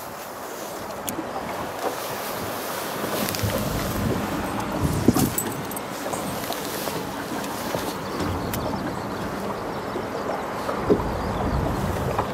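Wind buffeting the microphone on an open boat deck, a low rumble that grows stronger a few seconds in, over a steady background hiss.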